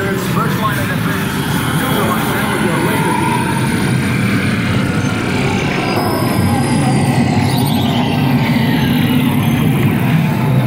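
Loud, steady dark-ride noise from a laser-shooting ride, mixed with people's voices. Over the last four seconds a high tone slides slowly down in pitch.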